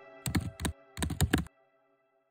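A quick run of sharp clicks, like keys being typed, in two small clusters over about a second, then the sound cuts out to dead silence.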